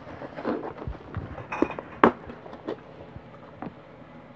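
Small plastic model-kit parts being handled on a work desk: scattered light clicks and rustles, the sharpest click about two seconds in.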